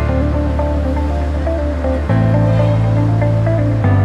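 Background music: sustained bass notes that change about two seconds in, under a repeating melody of short notes.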